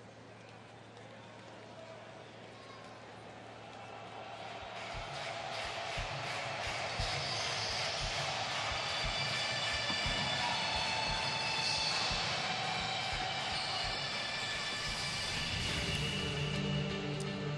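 Faint ambience, then music with a steady beat of about two beats a second swells in from around four to five seconds in and carries on at a moderate level.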